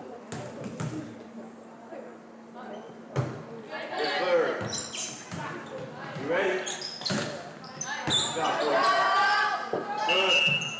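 Volleyball rally in a school gym: a few ball bounces early on, a sharp hit about three seconds in, then players calling and shouting, loudest near the end, echoing in the large hall.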